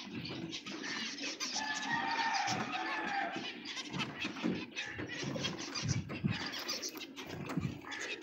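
A flock of zebra finches calling, many short chirps and beeps overlapping throughout.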